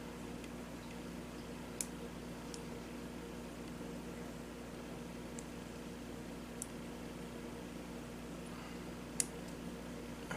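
A few light clicks of small steel rifle trigger parts (trigger, sear and jig pin) knocking together as they are handled, the sharpest near the end, over a steady low electrical hum.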